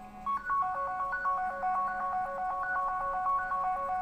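Electronic tune of plain beeping notes stepping quickly between a few pitches, louder from about a quarter second in.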